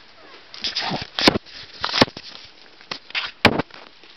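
Clear plastic packaging around a toy bird crinkling and crackling as it is handled, in a handful of sharp crackles with softer rustling between them.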